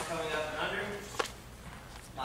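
A man's voice speaking for about the first second, then a single sharp knock a little past the middle, with quieter gym room sound after it.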